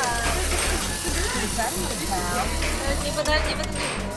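Arcade room din: game-machine music with a steady low beat and high, sing-song voices or jingles over it, with a few sharp clicks about three seconds in.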